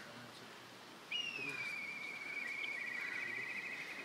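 A bird's long whistled call, faint and distant, starting about a second in. It drops slightly in pitch, then holds one steady note that turns faintly trilled near the end.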